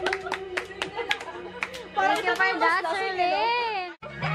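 A woman singing into a handheld microphone, her voice amplified, holding long wavering notes from about halfway through. Quick, regular clicks sound in the first half. The sound cuts off abruptly at the end.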